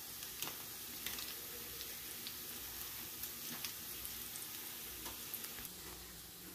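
Faint room tone: a steady hiss and low hum, with a few soft clicks scattered through it.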